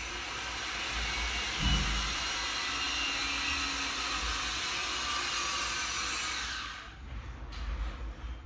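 A steady, even rushing hiss, like air from a blower, starts at the outset and cuts off about seven seconds in. A dull low thump comes about two seconds in.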